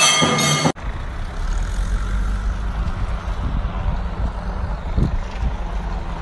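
Music that cuts off abruptly under a second in, giving way to a steady low rumbling noise that lasts about five seconds; music comes back in just before the end.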